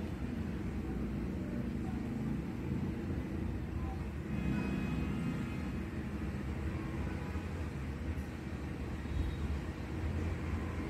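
A steady low rumble of background noise, with a faint thin whine about halfway through.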